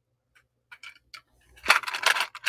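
Small metal brooches handled in the fingers: a few light clicks, then a louder jingling clatter near the end as several are picked up together.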